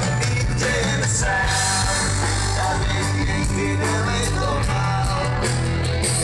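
Live rock band playing through an open-air PA, with a singer over bass and drums.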